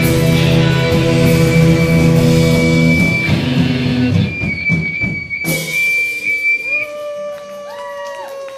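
Live rock band with electric guitars and drums ending a song: the full band drops out about three seconds in, leaving a held high tone and a cymbal crash, then ringing guitar notes that bend and slowly slide down in pitch.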